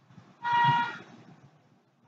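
A single short horn toot: one steady note lasting about half a second, starting about half a second in.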